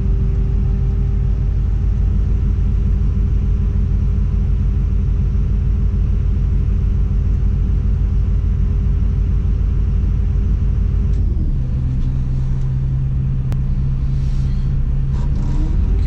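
Tadano all-terrain crane's diesel engine running steadily while the crane is worked, heard from inside the operator's cab, with a steady higher tone over the engine drone. About eleven seconds in, the tone cuts off and the engine note drops and changes.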